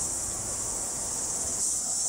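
A steady high-pitched hiss with no clicks, sparks or other events.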